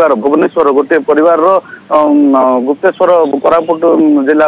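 A man's voice reporting over a telephone line, sounding narrow and thin.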